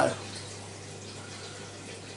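Steady room tone: a low, even hiss with a faint constant hum underneath, with no distinct event.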